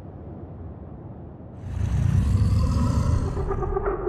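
Trailer sound effect: a low rumble that swells into a loud, deep rushing roar about one and a half seconds in and lasts about two seconds, with a held musical tone coming in near the end.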